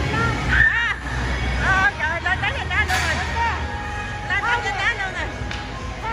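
Children's high-pitched shouts and squeals, several voices overlapping, over the steady low hum and babble of a busy indoor play hall.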